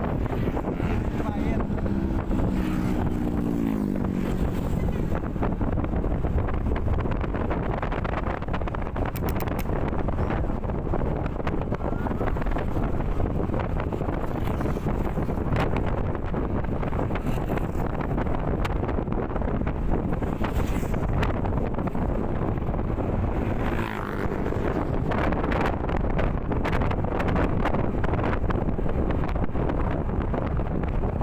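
Wind rushing over the microphone, with a Yamaha NMAX scooter's engine and its tyres on the road running steadily while riding. In the first few seconds a second engine note goes by, falling in pitch.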